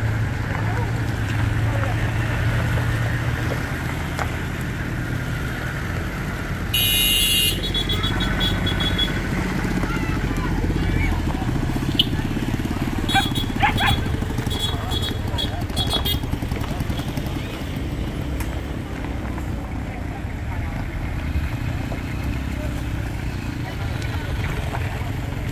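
Car and motorcycle engines running at low speed as vehicles roll slowly past, with people talking in the background. A brief high-pitched burst cuts in about seven seconds in, and a few short clicks and tones follow a little later.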